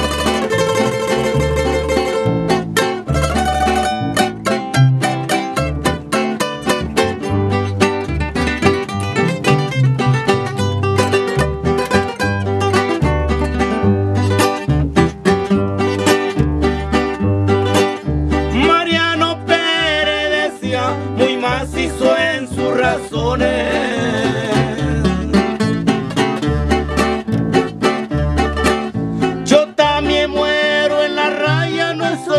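Instrumental break of a Mexican corrido: plucked string instruments playing the melody over a bass line that changes note on the beat, with no singing.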